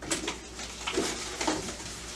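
Flaps of a cardboard produce box being pulled open, giving a series of short irregular rubbing and creaking sounds.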